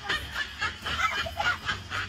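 Rapid, high-pitched snickering laughter in short repeated bursts, about five a second.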